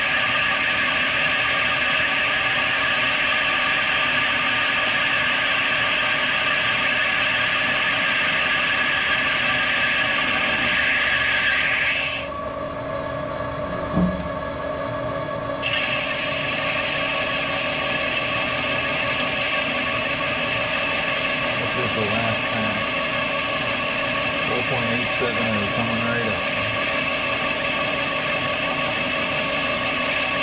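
Haas TL-2 CNC lathe boring a steel hydraulic swivel housing, the spindle turning steadily as the tool cuts and breaks chips. About twelve seconds in, the cutting sound drops out for a few seconds, with a single knock partway through, and then resumes.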